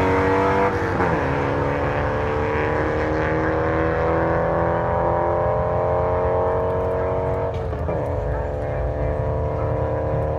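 Two cars accelerating hard side by side in a drag race, their engines climbing steadily in pitch. The pitch drops at an upshift about a second in and again near eight seconds.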